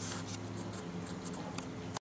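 A steady low hum under light scratchy rustling and small clicks, the sound of a handheld camera being moved about outdoors.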